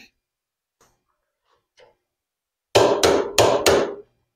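A click-type torque wrench clicking four times in quick succession about three seconds in, each a sharp click about a third of a second apart, as it reaches its 75 foot-pound setting while a rifle action is torqued onto its barrel.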